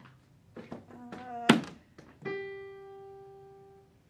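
Piano: a few short notes played in quick succession, then a sharp thump about a second and a half in, then a single note struck and held, fading away.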